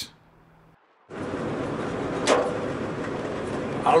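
Steady road and wind rush inside the cabin of an electric-converted VW Beetle on the move, starting about a second in, with a sharp unexplained noise about two seconds in that the driver doesn't know the source of.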